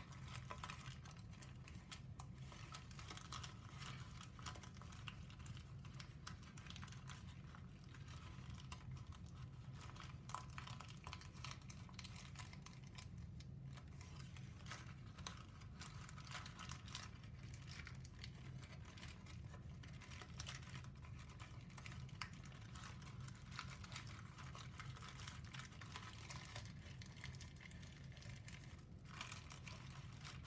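Brown origami paper crinkling and rustling in quick, irregular small clicks as hands fold and press a heavily pleated model, over a low steady hum.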